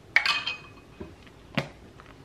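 Clinks against a glass mixing bowl. The loudest comes just after the start and rings briefly, then two lighter knocks follow about a second and a second and a half in.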